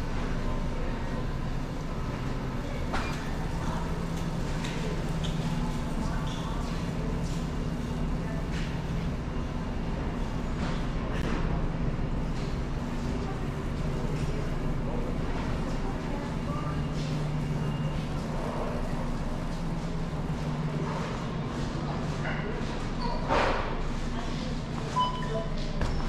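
Supermarket background sound: a steady low hum under scattered clicks and knocks, with indistinct voices, and a louder clatter a few seconds before the end.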